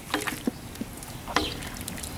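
Long wooden paddle stirring a big pot of thick chili, with a few short knocks and scrapes against the pot.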